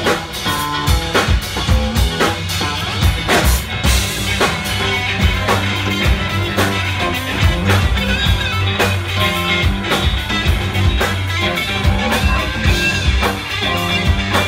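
Live funk band playing an instrumental groove: electric bass, electric guitars and drum kit with a steady beat.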